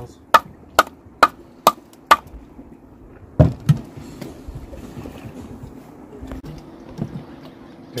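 Conch shell being struck to break it open and free the animal inside: five sharp, even knocks about two a second, stopping a little past two seconds in, then two duller, heavier thumps about a second later and one more near the end.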